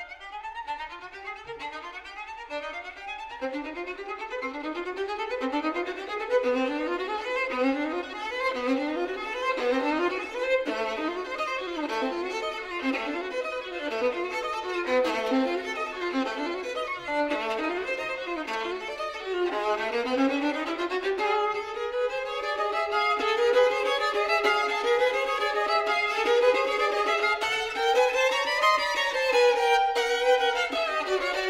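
Solo violin playing fast, repeated figures that grow louder over the first few seconds. About twenty seconds in it changes to long sweeping runs up and down against a held note.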